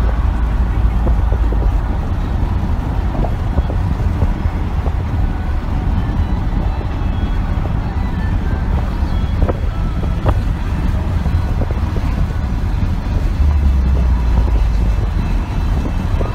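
Steady low road and engine rumble inside a car's cabin while driving at highway speed.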